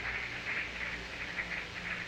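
Faint audience cheering and whooping, heard through the soundboard mix, over a steady low electrical hum. The band is not playing.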